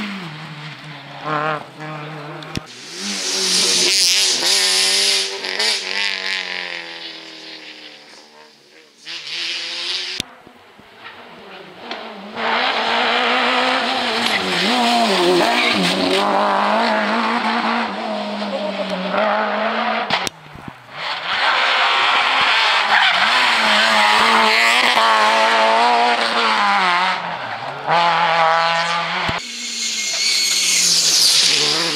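Rally cars taking a tight hairpin one after another, engines revving hard with their pitch dropping and climbing again through the bend, and tyres squealing. The sound cuts abruptly between cars three times.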